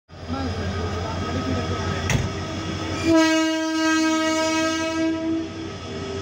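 WAG12B electric freight locomotive passing close by with a steady low hum and a sharp knock about two seconds in. About halfway through it sounds its horn, one steady blast of about two and a half seconds.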